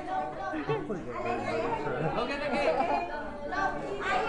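Overlapping chatter of several people talking at once, with no single voice clear.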